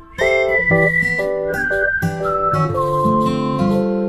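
Background music: a whistled melody that slides between notes over plucked acoustic guitar chords, coming back in just after a brief pause at the start.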